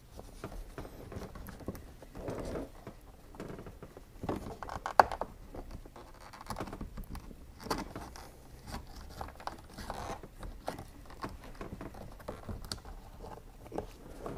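Irregular small plastic clicks, taps and rustling as a C5 Corvette sun visor's pivot mount and trim are worked loose by hand and with a small flathead screwdriver, with one sharp click about five seconds in.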